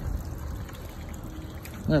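Steady low rumble and hiss of outdoor background noise between words, with a man's voice starting right at the end.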